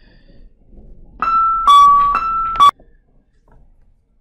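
Electronic two-tone chime: a higher and a lower note alternate twice in about a second and a half, starting about a second in and cutting off sharply. It interrupts the recording.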